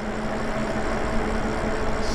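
Lyric Graffiti e-bike cruising at steady speed: an even rush of tyre and wind noise with a faint steady hum.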